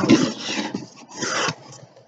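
Cardboard box being opened, its lid and flaps scraping and rubbing in two rough rasps, the second a little over a second in.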